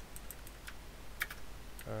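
Computer keyboard keys being pressed: a few separate, irregularly spaced keystrokes, the loudest a little past a second in, as the cursor is moved through a file in a text editor.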